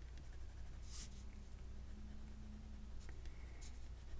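Faint scratching of a Crayola colored pencil laying small spots of colour on smooth cardstock.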